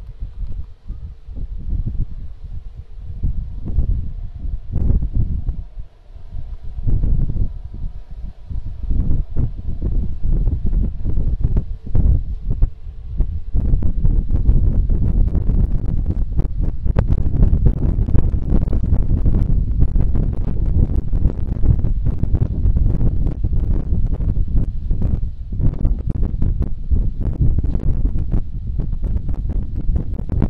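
Wind buffeting the microphone outdoors on open water, a rough low rumble. It comes in uneven gusts at first and turns louder and steadier about halfway through.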